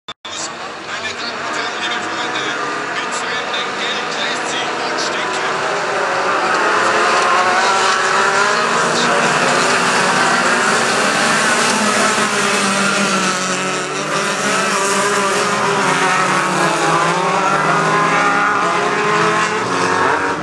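A pack of touring cars up to 1600 cc racing on a dirt autocross track: many engines revving hard together, growing louder over the first several seconds and then holding steady.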